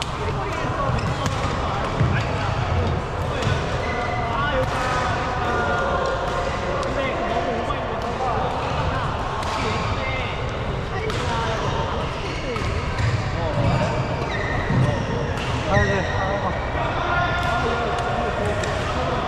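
Badminton rackets hitting a shuttlecock in a doubles rally, sharp hits every second or few seconds, over a steady hubbub of voices and play from other courts in a large, echoing sports hall.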